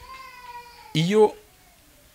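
A faint, high animal call held for about a second and falling slightly in pitch, followed by a man speaking one word.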